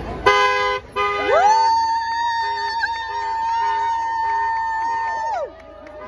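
A car horn sounds in a short blast, then again about a second in. A high voice then rises into one long cry, held with a slight wobble for about four seconds before dropping away.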